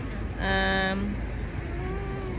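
Steady low rumble of city street traffic, with a woman's voice briefly holding a wordless 'uhh' about half a second in.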